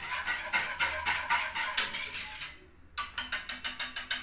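Wire whisk beating milk in an aluminium pot, its wires clattering against the pot's sides in quick strokes, about five a second. There is a brief pause about two and a half seconds in, then faster strokes.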